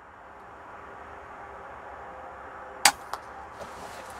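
Air rifle shot about three quarters of the way through: one sharp crack, followed about a third of a second later by a fainter knock of the pellet striking the rook. Steady background noise throughout.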